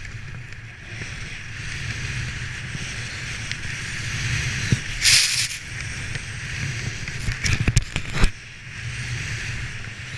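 Splitboard riding down through snow, a steady rushing hiss of the board sliding over the surface. About five seconds in comes a brief, sharper spraying hiss as the board turns, and near the eighth second a quick cluster of knocks and scrapes.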